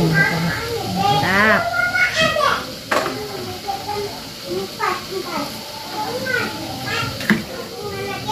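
Children's voices chattering and calling out, some high and squealing, with two sharp knocks, one about three seconds in and one near the end.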